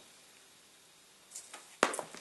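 A paperback book being handled and set down on a table: a faint rustle of paper and cover, then one sharp tap near the end as it lands.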